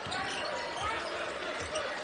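A basketball being dribbled on a hardwood court, a few short thumps, over the steady murmur of an arena crowd.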